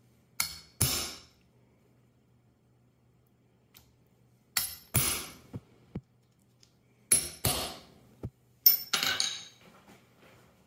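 Cobbler's hammer striking a steel snap setter to set brass belt-snap caps on a granite slab: eight sharp metallic blows in four quick pairs, each with a brief ring.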